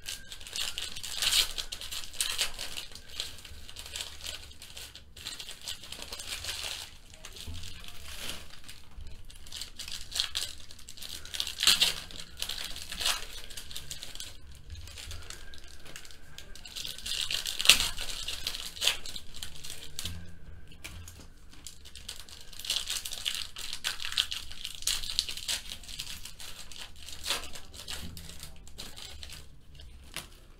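Foil trading-card pack wrappers (Panini Select football packs) being crinkled and torn open by hand, in several bursts of rustling with a few sharp rips.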